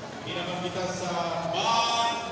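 A voice calling out in long, drawn-out phrases, several in a row with the pitch gliding between them, typical of an announcer over a public address loudspeaker.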